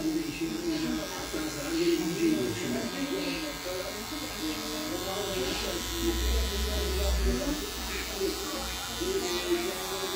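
Cordless Wahl Magic Clip hair clipper running steadily as it cuts beard stubble along the cheek, with voices talking in the background.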